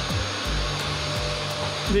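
Vacuum cleaner running steadily, with a rush of air through its hose.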